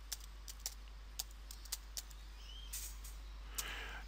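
Faint keystrokes on a computer keyboard, about a dozen irregular clicks as a word is typed.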